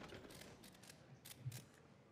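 Faint, scattered camera shutter clicks, about ten at irregular intervals, over quiet room tone.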